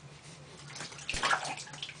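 Bath water in a baby's inflatable tub splashing and sloshing lightly in irregular small splashes, picking up about a second in.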